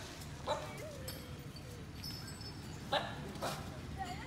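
Short, sharp animal calls: one about half a second in that trails off into a thin, wavering tone, and two more close together near the end.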